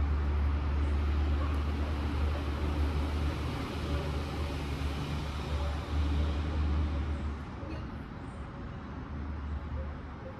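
A steady low rumble over a wide hiss of outdoor noise, easing off after about seven seconds.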